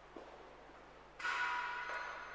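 A small bell in a church rung once, a little past halfway: a sudden bright ringing of several tones that fades slowly.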